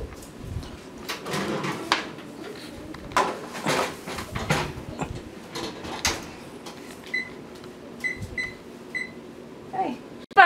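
Kitchen clatter of knocks and rattles as a foil tray of pizzas goes into an electric oven, then four short beeps from the range's touch keypad as its buttons are pressed.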